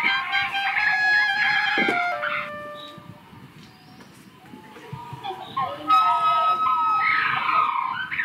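Solo clarinet playing a phrase that ends on a held note about two and a half seconds in, followed by a quieter gap. About six seconds in, a long high steady note comes back amid sliding, wavering tones.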